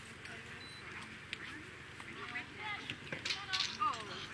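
Voices during a dog agility run: the handler calls out to the running dog, louder near the end, over an outdoor background of other people talking.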